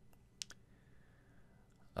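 Near silence, broken by two short clicks close together about half a second in.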